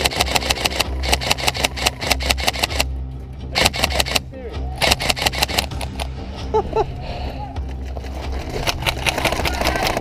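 Airsoft rifles firing in rapid full-auto bursts, a dense run of sharp clicks broken by a short pause about three seconds in and thinning out in the second half, over a steady low hum.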